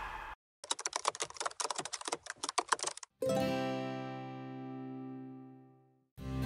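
An edited sound effect of rapid keyboard typing, a quick irregular run of clicks lasting about two and a half seconds. It is followed by a held musical chord that slowly fades away.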